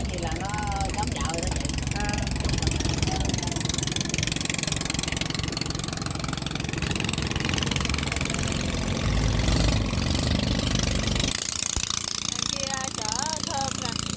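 A small wooden river boat's engine running steadily under way. Its deep sound drops off sharply about eleven seconds in.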